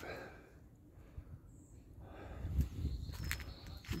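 Footsteps of a person walking outdoors on a paved path, with light handling noise. Soft thumps and a few sharp clicks come in the second half.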